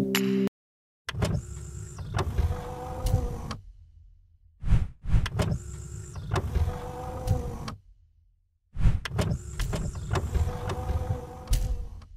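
Sound effects for an animated cube logo: three runs of mechanical whirring and sliding. Each run opens with a sharp click, lasts about three seconds and fades out, with short silent gaps between them.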